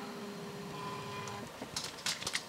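Faint steady whir of a camcorder's zoom motor as the lens zooms out, stopping about a second and a half in, followed by a few clicks of the camera being handled.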